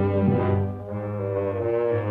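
Orchestral music led by low brass: tubas sustaining deep chords over a bass line, with a change of chord and a brief dip in loudness just under a second in.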